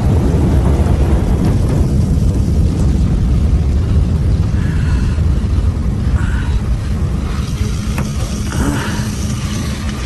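A deep, steady low rumble that slowly dies away, the drawn-out tail of a film explosion, with a single sharp click about eight seconds in.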